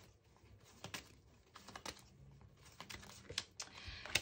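Tarot cards being handled and drawn from the deck: a few faint, irregular clicks and taps of card stock against the wooden table.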